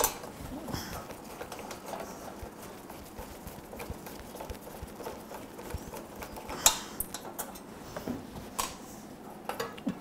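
Faint, scattered metal clicks and taps of a socket driver turning out the bolts of a lawn mower's muffler guard, with one sharper click about two-thirds of the way through and a few more near the end as the guard is worked loose.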